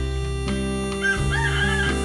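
Background instrumental music with steady held notes, and a rooster crowing once about a second in, lasting under a second.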